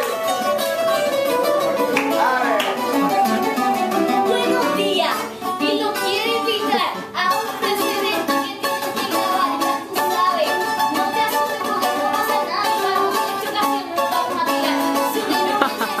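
Acoustic guitar played live with steady strumming, with a child's voice over it at the microphone.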